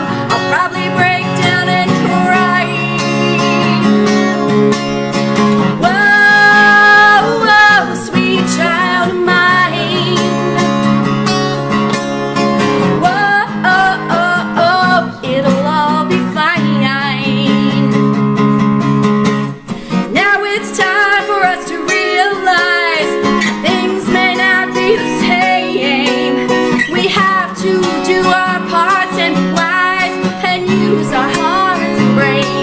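A woman singing over a strummed acoustic guitar, with a long held note about six seconds in.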